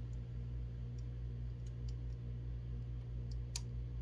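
A few faint, scattered clicks of the wing on a 1:18 diecast sprint car being worked back onto its mounts, heard over a steady low hum.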